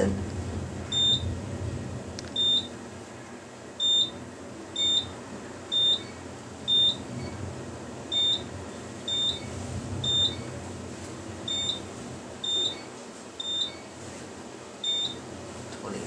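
Otis Lexan elevator car's floor-passing signal: a short high beep about once a second, thirteen in all, as the car climbs floor by floor, over the low steady hum of the moving car.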